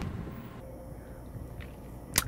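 Quiet background noise: a low steady rumble with a faint hiss and no distinct event.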